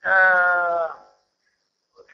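A man's voice holding a drawn-out hesitation vowel for about a second, steady in pitch with a slight downward slide.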